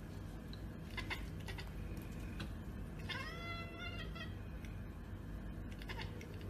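A Sphynx cat gives a single meow about three seconds in, rising at the start and then held for about a second. A few short clicks come before it, over a steady low hum.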